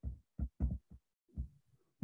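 Stylus knocking and tapping on a writing tablet during handwriting, heard as about five short, dull thumps.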